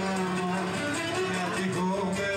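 Live Cretan syrtos dance music played on laouto and other plucked strings, strummed, under a sustained melody line.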